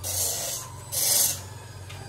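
Stick welding arc crackling and sizzling in two short bursts of about half a second each, one at the start and one about a second in: tack welds on a square steel tube joint.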